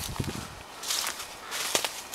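Footsteps in dry fallen leaves: a few irregular steps with a rustling crunch of leaf litter.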